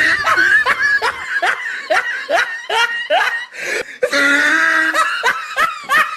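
A person laughing loudly: a run of short rising 'ha's, about three a second, broken by a longer held note about four seconds in.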